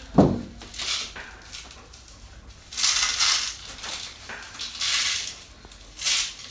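Neoprene suspension sleeve being worked back into a plastic dog knee brace: rubbing and scraping of fabric against plastic in a few rasping bursts, with a short knock just after the start.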